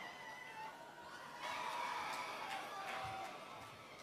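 Faint hall background: soft held musical tones, like a keyboard, with distant congregation voices under them, swelling slightly about a second and a half in.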